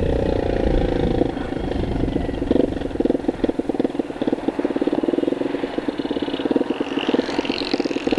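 Gladiator 200cc GP-2 motorcycle engine running under way as the bike accelerates, a steady engine note with fast, even firing pulses that changes about a second in and grows stronger from a couple of seconds in.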